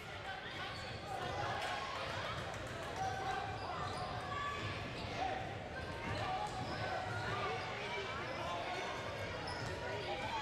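Many voices chattering at once in a gymnasium, spectators and players talking during a break in basketball play, with the hall's echo.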